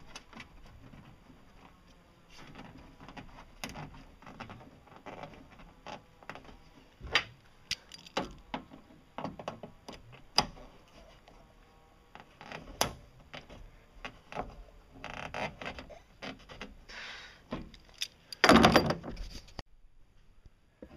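Hand work on a ribbed metal brace and its bolt: scattered sharp clicks and knocks of metal on metal and on the cabin wall, with short scraping bursts and a louder scrape near the end.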